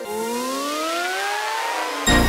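A rising synthesized sweep in a logo intro sting: a stack of tones glides steadily upward together for two seconds.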